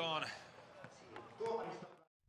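A male commentator speaking in short phrases over quiet stadium background, with a lull of near quiet in the middle.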